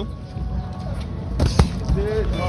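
Boxing gloves landing punches: two sharp smacks in quick succession about a second and a half in, over a steady low background rumble.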